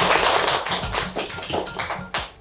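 Hand clapping over background music. The clapping is dense like applause at first and thins out toward the end.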